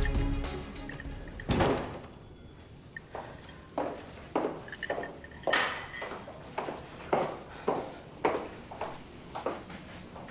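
Background music fading out, then a single thump about a second and a half in, followed by steady footsteps on a hard floor, a little under two steps a second, ending near the end.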